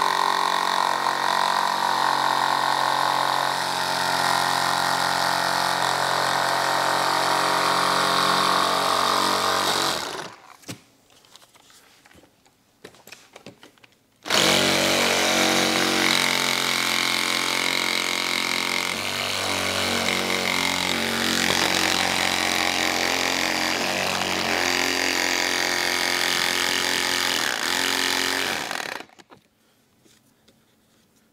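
Handheld cordless saw cutting through a motorcycle saddlebag lid, its motor whine wavering in pitch as it is worked along the line. It stops for about four seconds a third of the way in, then starts again and runs until just before the end.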